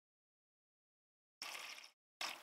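Near silence, then near the end about half a second of water running from a refrigerator door dispenser into a styrofoam cup of crushed ice.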